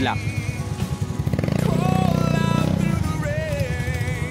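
Motorcycle engine running as it is ridden, its low, even beat growing louder in the middle. Background music with a singing voice plays over it.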